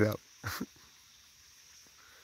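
Near silence outdoors: a faint, steady high insect hum, broken about half a second in by one short cry.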